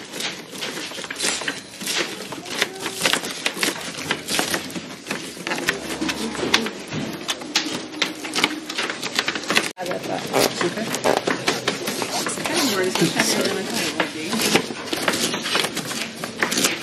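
Kitchen knives chopping cabbage on plastic cutting boards: a rapid, irregular run of taps from several people at once, with voices talking in the background.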